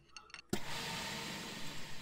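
A few faint clicks, then from about half a second in a steady, even machine noise from the lathe-mill combo's milling spindle running with an edge finder fitted.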